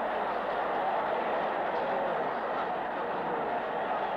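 Steady stadium crowd roar during a sprint race, dull and band-limited as in an old broadcast recording.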